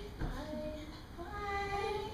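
A woman singing long, held notes, with a new note starting about a quarter of a second in.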